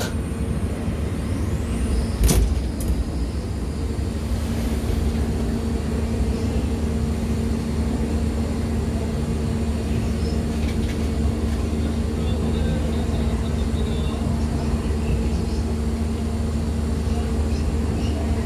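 Lotte World monorail car running along its track, heard from inside the car: a steady low rumble with a constant motor hum. A single sharp knock comes about two seconds in.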